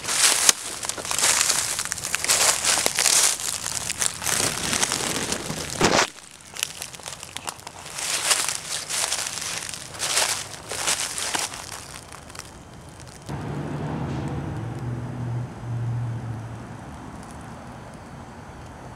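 Dry twigs and brush crackling and snapping in repeated bursts as a person pushes through a dense thicket on foot, with a short lull partway through. For the last few seconds the crackling gives way to a steady low engine hum that fades out near the end.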